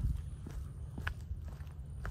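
Faint footsteps of a person walking, about two steps a second, over a low steady rumble.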